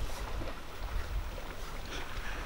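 Low, steady wind rumble buffeting the camera microphone outdoors.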